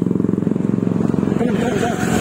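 Road traffic on a busy highway, dominated by a nearby motor vehicle engine running with a steady, rapid pulse. Voices start talking about a second and a half in.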